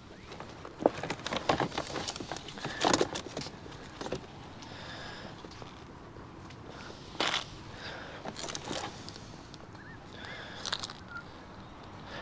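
Plastic CD and DVD cases being handled and shuffled in a bag by gloved hands: scattered clicks and knocks with rustling, in short irregular bursts.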